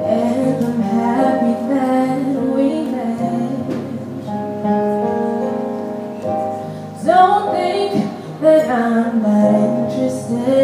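Slow live ballad: a woman singing over held chords played on a Yamaha Motif XS8 synthesizer keyboard. Her voice rises and bends most strongly about seven to nine seconds in.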